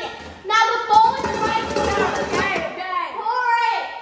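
Children talking loudly over one another; the words are not clear.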